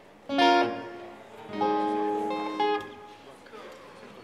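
Cort acoustic guitar strummed twice: one short chord about a third of a second in, then a second chord about a second and a half in that rings for about a second before being damped.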